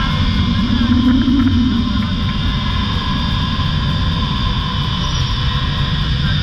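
Wind rushing over the body-worn camera's microphone during a fast zip-line ride, with the trolley's wheels running along the steel cable in a steady high whine.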